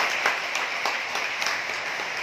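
Congregation applauding: many people clapping their hands together.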